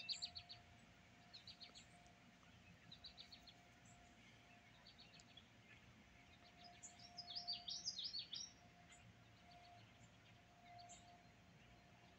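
Faint songbird chirping: short runs of quick, high chirps every second or two, with a louder burst of chirping about seven to eight seconds in.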